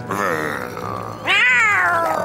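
Two angry, cat-like yowls from the cartoon snail and worm snarling at each other. The second, about a second and a quarter in, is louder and rises then falls in pitch.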